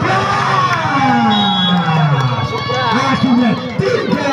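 Crowd of spectators cheering while a man's voice gives one long drawn-out shout that falls in pitch over about two seconds, followed by shorter shouted calls near the end.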